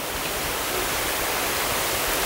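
A steady, even hiss with no speech, strongest in the high frequencies.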